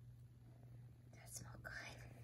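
Faint, quick sniffs of a large dog nosing at a seashell, starting about a second in, over a low steady hum.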